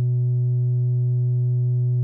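A single low synthesizer note held perfectly steady, a smooth pure tone with a few faint overtones.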